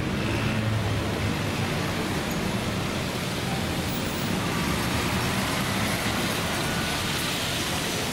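Steady city street traffic noise: a constant low rumble and hiss of passing vehicles.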